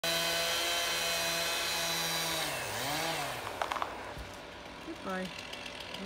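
Chainsaw cutting into a cedar trunk at a steady high speed; after about two and a half seconds the engine speed drops, climbs and falls again, with a few sharp clicks, then runs lower and quieter.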